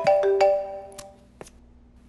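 Mobile phone ringtone playing a marimba-like melody of short struck notes, stopping about a second in as the call is answered.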